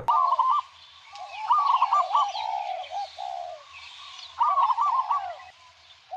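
A bird calling in several short warbling phrases that rise and fall in pitch, over a faint steady outdoor hiss.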